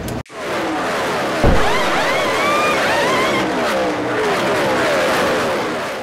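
Race cars running at speed, several engine notes sweeping up and down in pitch as they pass, with a low thump about a second and a half in. The sound fades out near the end.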